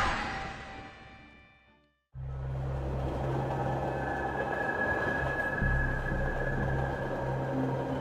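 A ringing, many-toned sound effect fades out over the first two seconds. After a moment of silence, the steady low rumble of a train carriage running sets in, with a held high tone above it.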